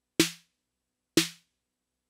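Roland TR-8 drum machine's snare drum, triggered live by MIDI notes from Ableton, struck twice about a second apart. Each hit is a short crack with a brief tone and a hissy tail that dies away quickly.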